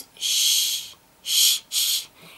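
A woman pronouncing the Russian soft hissing sound Щ (shch), a voiceless 'shh' made with the tongue raised and flattened toward the hard palate. It comes three times: one long hiss, then two short ones about half a second apart.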